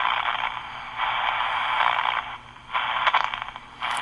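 Hiss and static from the speaker of an R-2322/G military HF SSB receiver during its power-on self-test. The noise is confined to a narrow voice-audio band and drops out briefly about halfway through and again near the end.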